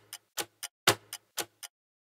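Clock-style tick-tock sound effect ticking off the guessing time, alternating louder and softer ticks about four a second, stopping shortly before the end.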